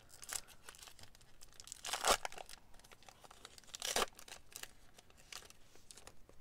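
A foil trading-card pack being torn open and its wrapper crinkled, with the loudest rips about two seconds in and again about four seconds in.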